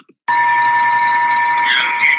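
A loud, steady, high electronic tone over hiss starts suddenly about a quarter second in and holds. Near the end it gives way to the start of music.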